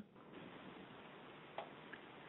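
Near silence: faint steady hiss on the webinar audio line, with one faint click about one and a half seconds in.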